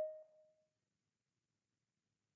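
The fading tail of a Microsoft Teams notification chime: a single ringing tone that dies away within about half a second. It signals a new participant waiting in the meeting lobby.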